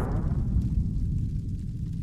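Cinematic logo-sting sound effect: a deep boom whose low rumble slowly fades away.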